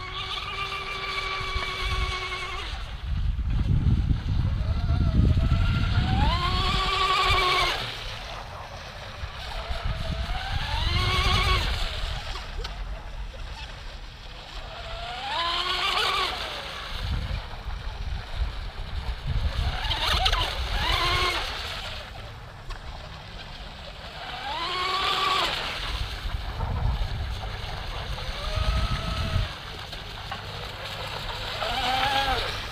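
Small RC catamaran's motor and propeller whining, rising in pitch each time it is throttled up and falling away again, about every four to five seconds as the boat runs laps. Gusts of wind rumble on the microphone.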